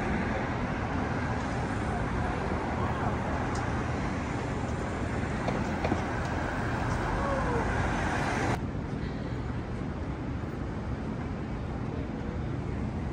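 City street traffic noise: a steady hiss of cars passing on the avenue. About eight and a half seconds in, the louder part of it stops abruptly and a quieter, duller street background remains.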